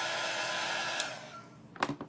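Small corded craft heat tool blowing steadily over chalk paste to dry it, then switched off with a click about a second in, its fan running down over the next half second. A couple of short clicks follow near the end.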